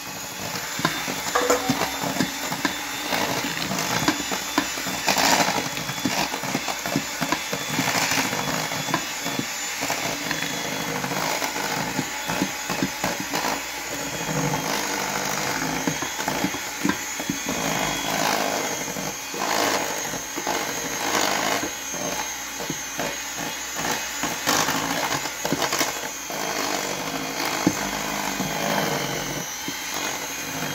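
Electric hand mixer running continuously, its beaters churning chocolate cake batter as milk and flour are mixed in, with irregular knocks and clatters of the beaters against the stainless steel bowl.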